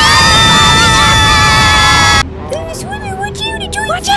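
Several high-pitched voices screaming together in one long held scream for about two seconds, cut off abruptly, followed by quieter voices with wavering pitch.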